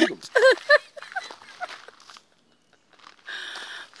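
A woman's brief spoken words, then near silence and a short rustling noise lasting under a second, about three seconds in.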